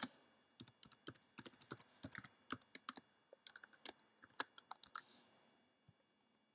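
Faint, irregular typing on a computer keyboard: a run of single keystrokes that stops about five seconds in.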